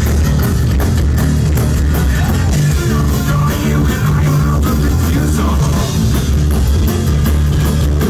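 Rock band playing live at full volume: heavy bass, guitar and a steady drum-kit beat.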